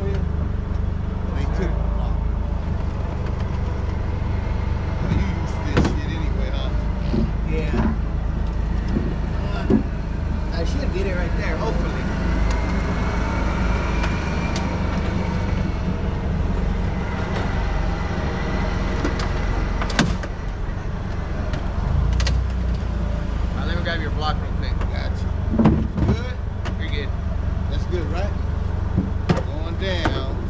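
Steady low rumble of an idling vehicle engine, with voices in the background, a faint whine that rises and falls partway through, and a few sharp knocks.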